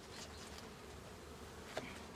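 Faint steady buzzing of a mass of Russian hybrid honeybees being shaken out of a package box into an open hive, with one light knock near the end.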